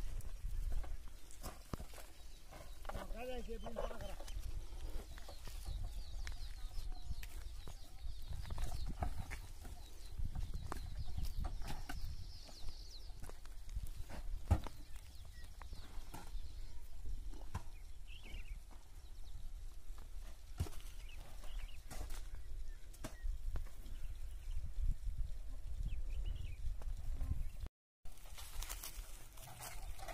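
Outdoor field ambience: a steady low rumble with scattered short clicks, and faint voices, one of them about three seconds in.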